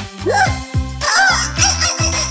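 Upbeat children's cartoon background music with a steady beat. Over it, a short rising cartoon sound effect comes near the start, and a wavering, squawk-like call follows about a second in.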